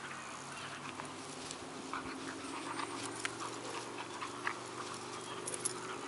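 Dog growling low and continuously during a tug-of-war over a rope toy, with small clicks and rustles from the rope and the dogs moving on the grass.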